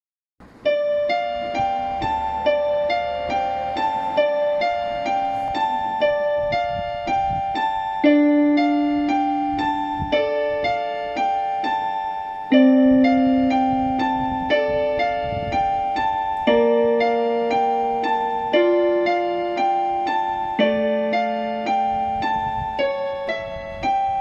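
Yamaha PSR-F51 portable keyboard played with both hands in a piano voice: a gentle melody of even, repeated notes at about two a second over lower held notes that change every couple of seconds.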